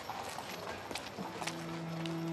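Sharp, irregular clopping steps on pavement. About a second in, low sustained string notes of background music begin.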